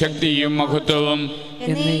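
A priest chanting a sung prayer of the Syro-Malabar Mass in long held notes, with a steady low tone sounding beneath the voice. The voice dips briefly about one and a half seconds in.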